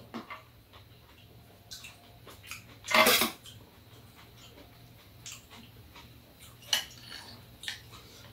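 Metal spoon and chopsticks clinking and scraping against bowls and containers during a meal, in scattered short clicks, with one louder, longer sound about three seconds in.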